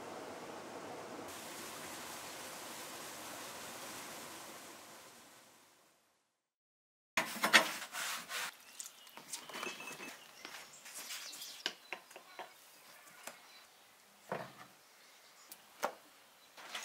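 Steady outdoor hiss fades out about five seconds in. After a second of silence comes a run of sharp clicks and knocks, loudest at first, at a smoking wood-fired stove top with cast-iron ring plates.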